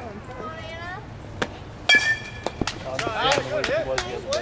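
Softball bat striking the pitched ball with a single sharp, ringing ping about halfway through. Several voices call out just after.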